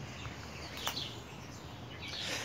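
Faint outdoor background noise with a few distant bird chirps and a soft click a little under a second in.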